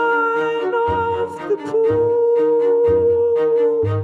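A song with a singer holding long notes into a microphone over a backing track, with a low bass pulse about once a second and light regular percussion.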